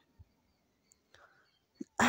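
Near silence, with one faint soft breath a little past the middle.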